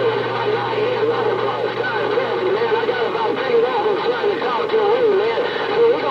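Galaxy CB radio receiving a strong signal on channel 6: garbled, unintelligible voices with wavering, whistle-like tones over static and a steady hum.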